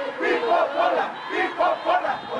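A crowd of marching protesters shouting, many voices overlapping at once.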